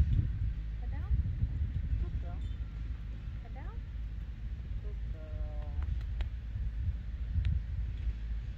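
Wind rumbling on the microphone outdoors, with a few short rising chirps over it and a brief held tone about five seconds in, followed by a couple of sharp clicks.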